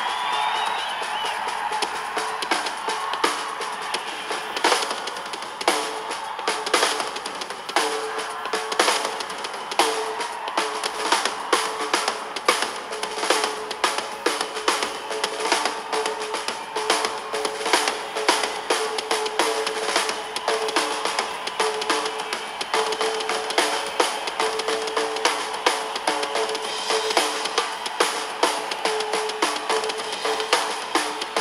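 Live rock music with the drum kit out in front: rapid, dense hits on a Ludwig kit's snare, toms, bass drum and cymbals over a repeated mid-pitched note, the sound thin with little bass.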